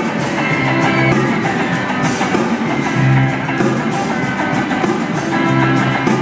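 Live band playing a song with guitar and drum kit, heard through the theatre's PA from out in the audience.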